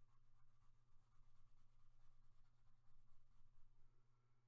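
Faint scratching of a coloured pencil shading back and forth on a paper colouring-book page, over a steady low hum.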